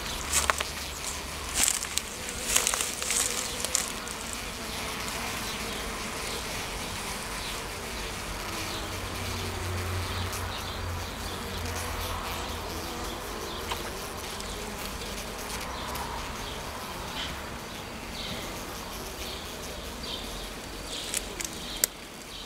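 Honeybees buzzing close by, a steady hum from the crowded cluster, with a few sharp clicks in the first few seconds.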